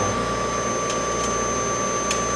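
Steady whir of laboratory machinery: the mass spectrometer's cooling fans and pumps running, with a constant high-pitched whine over a low hum.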